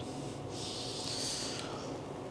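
A reciter's faint, breathy intake of air lasting about a second, starting about half a second in, drawn during a pause in Quran recitation before the next phrase.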